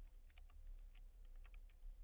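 Faint computer keyboard typing: a run of light, separate key clicks.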